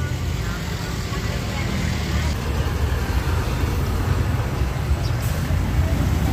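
Road traffic noise: a steady low rumble of vehicle engines passing on the street.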